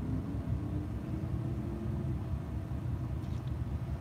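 Steady low vehicle rumble heard from inside a truck cab.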